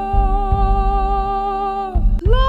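One singer holding a long sung "la" on a single steady note, over a low, evenly pulsing accompaniment.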